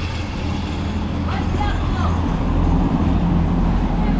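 Busy town street noise: a steady rumble of road traffic with background voices. A vehicle engine's hum grows louder a couple of seconds in.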